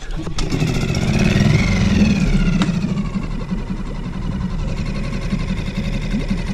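Small Suzuki outboard motor catching right away on a pull-start with the choke on. It revs up in the first couple of seconds, then settles into a steady run.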